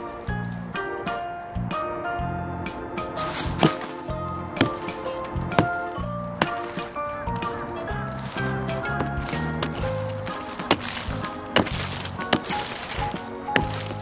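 Background music with a steady beat over a series of sharp strikes about a second apart: a hatchet chopping into the soft, rotten wood at the base of a tree stump.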